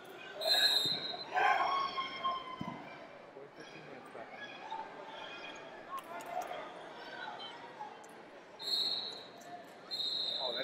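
Short referee's whistle blasts, one about half a second in and another near the end, over a background of voices in a large hall.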